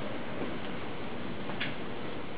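Clock ticking about once a second, faint under a steady background hiss, with the tick near the end the clearest.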